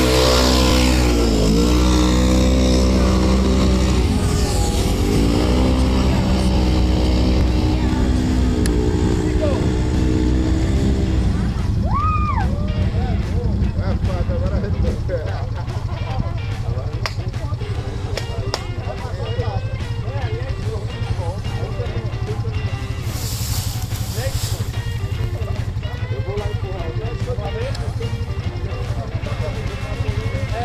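A UTV engine revving up and down under heavy load in deep mud, swelling and easing several times over the first ten seconds or so. After that it settles to a lower, steadier running beneath voices.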